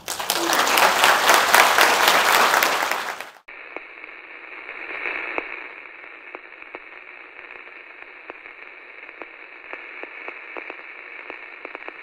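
Audience applauding, cut off abruptly about three and a half seconds in. A quieter, thin-sounding hiss with scattered clicks follows, like the static of an old radio.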